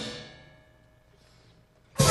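High school jazz big band cutting off together, the sound dying away over about half a second in the hall's reverberation. Near silence follows, then the full band comes back in suddenly with a loud held chord at the very end.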